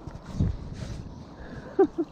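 Wind buffeting the microphone and handling noise as a spinning rod and reel are picked up, with a low bump early on. Near the end comes one short, sharp note that falls in pitch, the loudest sound here.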